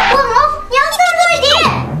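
A young child's voice shouting and exclaiming without clear words, with a quick falling glide in pitch near the end.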